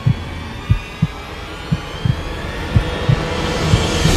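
A heartbeat sound effect in a film soundtrack: paired low thumps, about one pair a second, over a sustained music drone.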